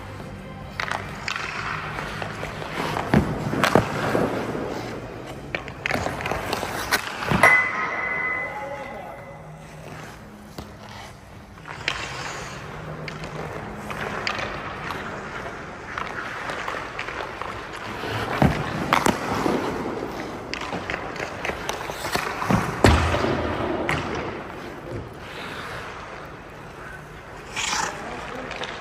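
Hockey skates scraping and carving on rink ice, broken by several sharp cracks of a stick shooting pucks and pucks striking pads or boards; one impact about seven seconds in rings briefly. Faint background music runs underneath.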